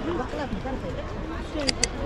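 Background voices of people talking in a busy street, with two short sharp clicks near the end.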